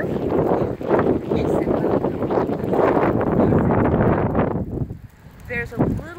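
Wind buffeting a handheld phone's microphone, loud and rough, with muffled talk under it. It drops away about five seconds in, and a man's voice is heard briefly near the end.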